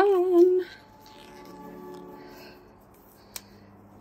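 A woman's voice sings a drawn-out 'dum' note that ends about half a second in. A faint steady hum follows, then a single sharp click a little past three seconds.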